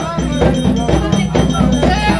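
Haitian Vodou drum ensemble playing, with a struck metal bell keeping the beat and a group singing over the drums.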